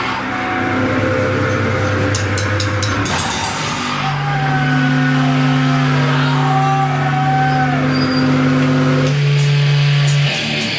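Electric guitar and bass amplifiers droning long held notes, the low tones steady and some higher ones wavering. A few scattered cymbal and drum hits fall in the first three seconds and again near the end, as the band waits to start the next song.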